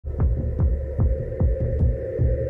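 Synthesized intro sound design: a low, heartbeat-like thumping pulse of about two and a half beats a second, each thump dropping in pitch, over a steady electronic drone.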